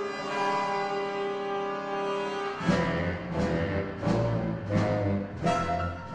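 Dramatic orchestral score: strings and brass hold a sustained chord, then about two and a half seconds in, low brass and percussion enter with heavy accented hits repeating a little under once a second.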